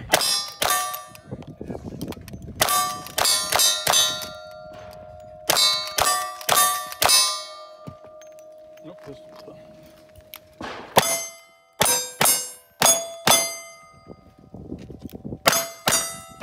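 Rapid gunshots at steel targets, each shot followed by the ring of the struck steel plate. A quick string of rifle shots comes first, then a pause of about two seconds, then a second fast string of revolver shots.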